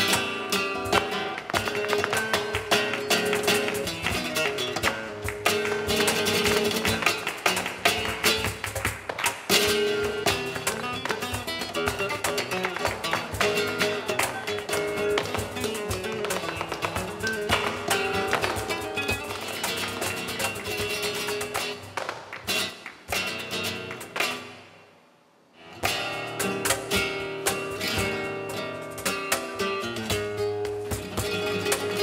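Live flamenco music: acoustic guitar with dense, rapid percussive taps. The music drops out for about a second roughly three-quarters of the way through, then starts again.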